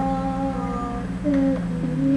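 Music: a woman humming long, held notes over a steady drone, her note shifting to a new pitch about a second in.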